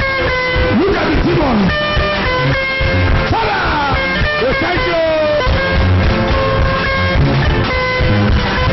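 Loud band music with held notes over a steady beat, with voices crying out over it.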